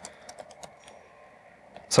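Typing on a computer keyboard: a quick run of key clicks as a shell command is entered, dense in the first second and then sparser.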